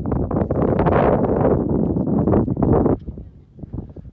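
Wind buffeting a phone's microphone: a loud, rough rumble for about three seconds that then drops away.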